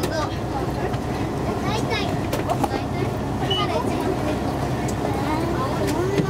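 City bus engine running with a steady low rumble, heard from inside the passenger cabin, with faint passenger voices over it.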